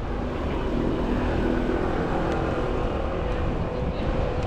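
City road traffic: a steady rumble of vehicle engines and tyres, with a passing vehicle's engine drone that is loudest about a second in.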